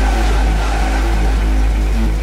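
Dark techno: a heavy, steady sub-bass under a dense repeating electronic pattern, with a gliding synth tone that fades out about a second and a half in.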